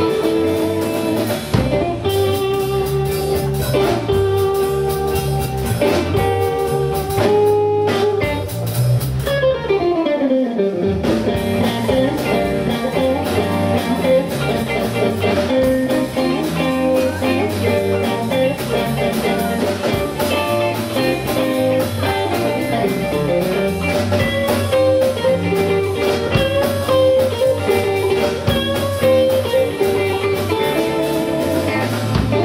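Live instrumental rock band playing: two electric guitars, bass guitar and drum kit. About ten seconds in the cymbals drop out and a note slides steeply down in pitch, then the full band comes back in.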